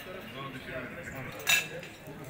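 Murmur of voices at a table, with one sharp, ringing clink of cutlery against a plate about one and a half seconds in.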